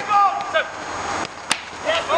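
A football kicked on a grass pitch: one sharp crack about one and a half seconds in, between players' shouts on the field.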